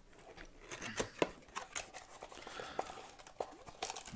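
Cardboard rustling and scraping as a small card box is handled and its inner tray slid out of its sleeve, with scattered light taps and clicks.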